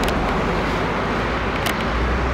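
City street traffic noise: a steady wash of passing cars with a low rumble, and a short click near the end.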